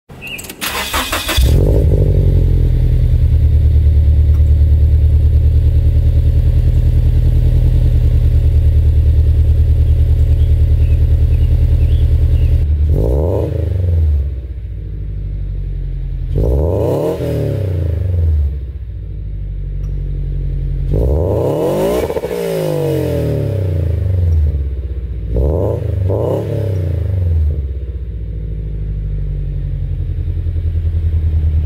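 Scion FR-S flat-four boxer engine breathing through unequal-length headers and an Invidia N2 cat-back exhaust, starting up and settling into a steady high idle. From about halfway in it is blipped five times, with one longer rev in the middle and two quick ones close together near the end, dropping back to a rumbling idle after each.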